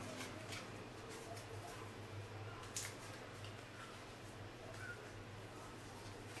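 Faint paper handling: light rustles and small taps as a printed toner-transfer sheet is fitted around a copper-clad board, with one sharper click about three seconds in. A steady low hum runs underneath.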